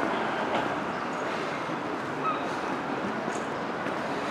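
Steady outdoor street background noise, an even hiss like distant traffic, with a few faint brief sounds over it.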